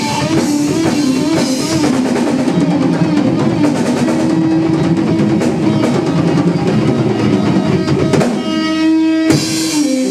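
Live rock band playing: electric guitar over a Mapex drum kit. Near the end the dense playing breaks off into a sustained, ringing guitar chord, with one loud drum and cymbal hit about a second before the end, closing out the song.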